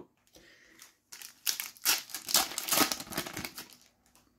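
Foil wrapper of a Panini FIFA 365 Adrenalyn XL card sachet crinkling as it is torn open: faint rustling, then a dense run of irregular crackles starting about a second in.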